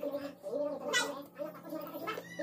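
A toddler's wordless vocal sounds, with a louder, higher-pitched cry about a second in.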